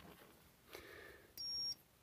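A digital multimeter beeping once, a short, high, steady tone about a second and a half in, after faint handling of the test leads.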